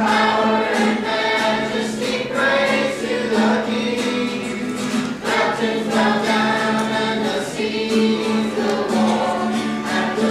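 Youth choir of boys' and girls' voices singing a worship song together.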